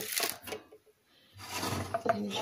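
A metal frying pan clattering and scraping on a gas stove's metal grate as it is shifted, followed about a second and a half in by a hiss that grows louder.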